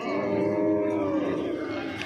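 Cattle mooing: one long, low call lasting about a second and a half.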